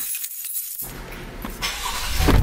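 Keys jangling and clinking, then a car being started with its push-button ignition, a low engine rumble coming in about a second in.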